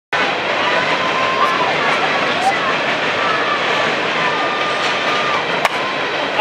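Steady outdoor background noise with faint distant voices, then a single sharp crack near the end as a bat strikes the softball.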